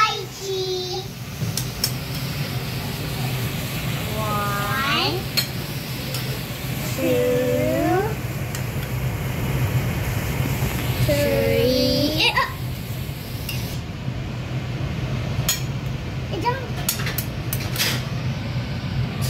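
A child's voice in three drawn-out, sing-song calls over a steady low hum. Near the end come a few light clicks of a metal spoon against the steel mixing bowl.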